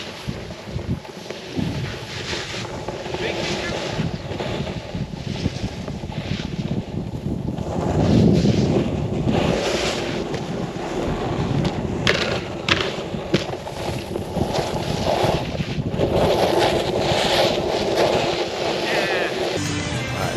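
Snowboard sliding and scraping over packed snow, with wind rushing over the microphone.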